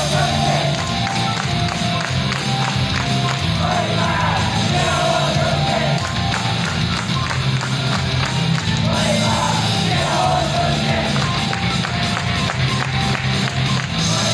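Upbeat J-pop idol song with female singing over a driving band backing and steady drum beat, played through a stage PA system and recorded from the audience.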